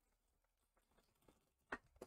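Near silence: room tone, with one faint short tap near the end.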